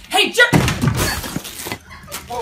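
A woman yelling, then about a second of loud crashing, scuffling noise as she lunges at a man and grapples with him.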